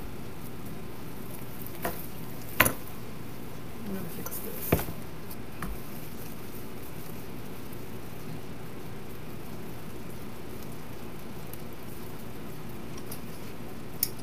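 A few sharp knocks and clicks from a grapevine wreath and craft materials being handled on a worktable, the loudest about two and a half seconds in, over a steady hiss.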